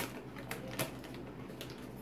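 A few light clicks and rattles as small crunchy snack pieces are picked out of a can of party-mix crackers.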